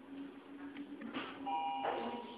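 A Mitsubishi elevator's up hall call button is pressed with a click, then a short electronic chime of steady tones sounds for about half a second near the end as the call registers.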